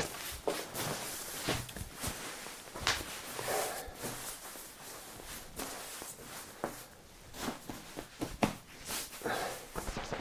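The shell fabric of a Rab Ascent 900 down sleeping bag rustling and swishing as it is unrolled and smoothed flat across a wooden table by hand, with scattered crinkles and a few sharper rustles.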